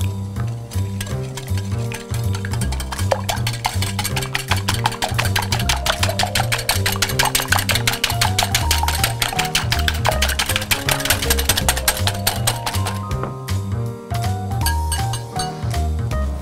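Wire whisk beating eggs with sugar, salt and oil in a glass bowl: rapid, steady clinking strokes of metal against glass, busiest through the middle, over background music with a steady bass line.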